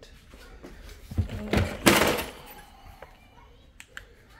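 Objects being handled by hand: a few soft thumps, then a short scraping rustle about halfway through, and a single sharp click near the end.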